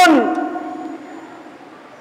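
A man's voice trails off with a falling pitch right at the start. A pause follows, in which the echo of the hall dies slowly away into faint room tone.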